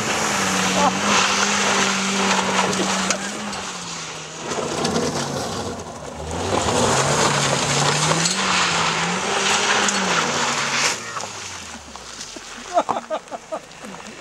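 Car engine revved hard as the car slides on loose gravel, with tyres churning and spraying stones. The engine note holds high, drops briefly, climbs again, then falls right away as the car slows near the end.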